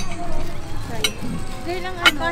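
Serving utensils clinking against plates: a sharp click at the start and another about a second in, over faint voices.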